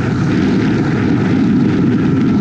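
Boat engine running steadily at speed as the hull moves across open water: a steady drone with rushing wind and water noise.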